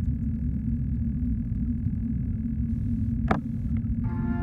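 Steady, muffled low rumble of water heard through an underwater camera's microphone in a swimming pool, with one brief sharp click about three seconds in.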